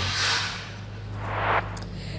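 Two whoosh sound effects of a TV news "LIVE" graphic transition. The first is bright and comes at once. The second builds and cuts off about a second and a half in. A steady low hum runs underneath.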